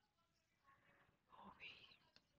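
Near silence, with a faint whispered voice or breath from about two-thirds of a second in to near the end.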